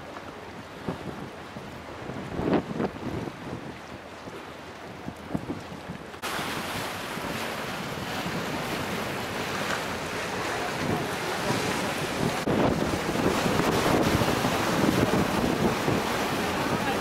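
Strong wind buffeting the microphone over the rush of choppy river water against the quay wall. It is gusty and quieter at first, then, after a cut about six seconds in, a steadier, louder rush that builds toward the end.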